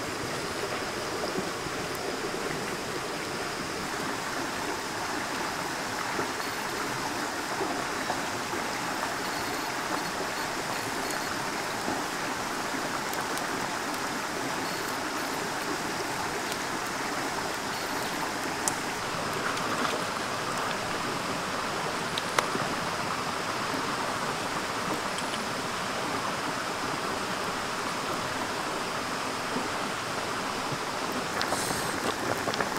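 Steady rushing of a shallow stream running over rocks, with a couple of brief sharp clicks about two-thirds of the way in.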